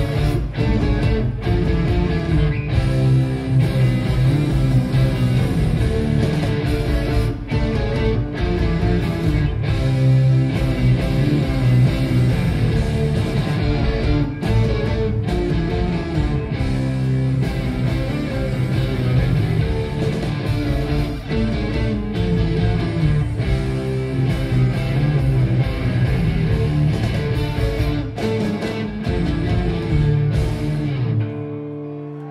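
Live rock band playing an instrumental passage with guitar to the fore, without vocals.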